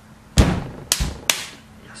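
Three sharp thumps about half a second apart, the first and loudest less than half a second in.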